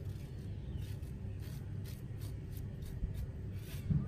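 A steady low rumble, with faint short scrapes of a knife scooping the seeds out of a halved cucumber on a plastic cutting board.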